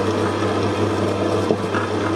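Stand mixer running steadily, its beater turning and working yeast dough in a stainless steel bowl: a constant motor hum, with one brief tick about one and a half seconds in.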